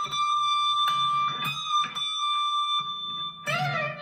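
Harley Benton SC-Custom II electric guitar with humbucker pickups, played amplified. A high note is bent up slightly and held for about three seconds while notes are picked under it. About three and a half seconds in, a new, lower note comes in, bent with vibrato.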